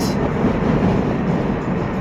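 Steady road and engine noise heard from inside the cabin of a moving car.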